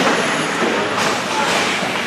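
Ongoing ice hockey game in an indoor rink: a steady wash of skates on the ice and crowd voices, with a sharp knock about halfway through.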